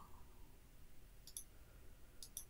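Near silence with a quick pair of faint computer mouse clicks about two-thirds of the way in.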